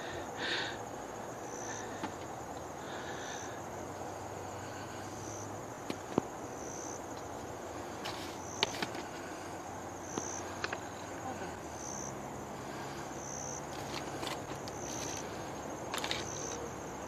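An insect chirping in a steady rhythm, one short high chirp about every second and a half to two seconds, over a faint continuous high insect hum. A few sharp clicks from handling a plastic jar geocache come in the middle.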